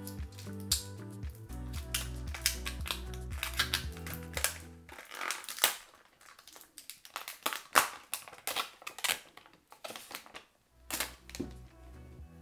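Plastic protective film crackling and crinkling as it is peeled off a smartphone, over background music that drops out about five seconds in and comes back near the end.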